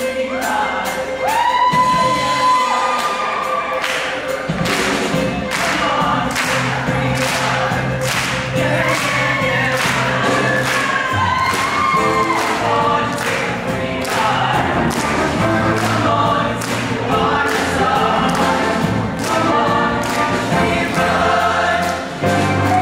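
A show choir singing with a live band, a steady drum beat driving under the voices.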